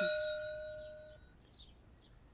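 A single bright metallic ding, a bell-like chime struck once and ringing on with a few clear tones that fade away over about a second and a half.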